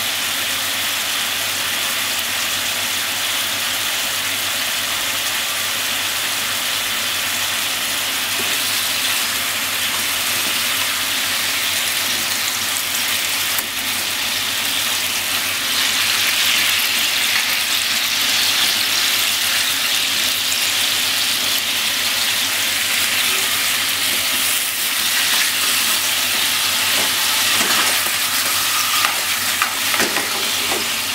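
Daikon radish steaks frying in a nonstick pan, sizzling steadily in a shallow layer of sauce. The sizzle grows louder from about halfway through as the slices are turned over with chopsticks, and a few light taps are heard near the end.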